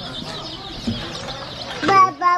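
Many baby chicks peeping together, a steady chorus of small high chirps.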